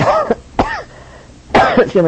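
A man coughing, three short coughs: one at the start, a weaker one about half a second later, and the loudest near the end.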